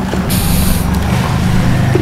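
Low, steady engine rumble with a short, sharp hiss about a third of a second in, lasting about half a second.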